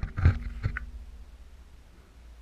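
A couple of handling knocks in the first second as the camera is set in place, the second followed by a brief low ringing tone, then quiet small-room tone with a low hum.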